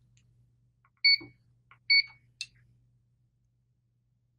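Two short electronic beeps from a PRS-801 resistance meter, under a second apart, as it makes a resistance measurement on the chair rail, followed by a short click.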